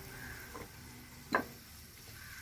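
Oil heating in a clay pot on a gas stove, sizzling faintly, with one sharp tick about a second and a half in.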